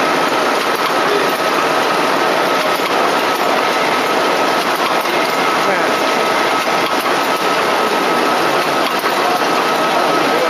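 Automatic silk reeling machine running with a steady mechanical din and a faint constant whine, against indistinct background voices.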